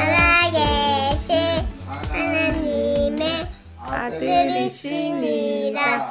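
A young child singing a Korean children's Bible memory-verse song over recorded backing music with a steady beat. The backing music drops out about four and a half seconds in, and the singing carries on alone.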